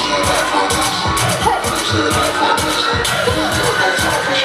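Loud music with a steady beat from a live stage show, heard from among the audience.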